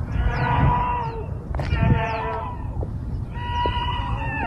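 People crying out in alarm at a plane crash and explosion: three long, high-pitched screams, the last one falling in pitch, over a steady low rumble.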